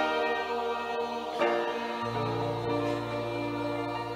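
Church choir singing long held notes with accompaniment; the chord changes and a low bass note comes in about two seconds in.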